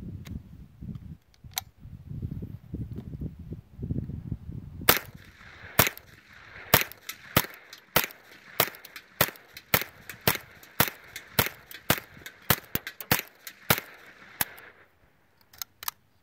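IMI Micro Uzi with a .22 LR conversion bolt firing Federal 36-grain bulk-pack rounds: a string of about two dozen sharp shots, roughly two a second at first and quicker toward the end, each with a short echo. The hotter ammunition cycles the conversion bolt without a stoppage. Before the shooting there are a few clicks as the gun is handled over a low rumble.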